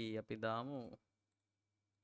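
A man's voice for about the first second, its pitch rising and falling in drawn-out sounds, then it stops and only a faint steady hum remains.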